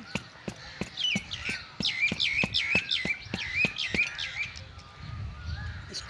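A bird singing a quick series of repeated notes, each sweeping down and back, for about three and a half seconds, over a steady run of sharp clicks about three a second.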